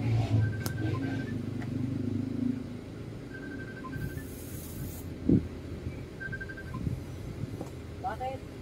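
A low engine rumble runs for about the first three seconds, then fades. About four seconds in, a hot soldering iron tip sizzles for about a second as it is pushed into a tip-cleaning tin, followed by a single sharp knock. Faint short high beeps come in three brief runs.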